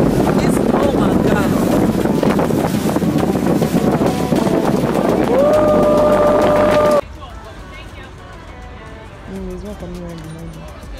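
Loud rush of wind and water with boat engine noise while a small water taxi moves across open water. A steady tone rises briefly and then holds over it near the end. The sound then cuts off suddenly to a much quieter dockside with faint voices.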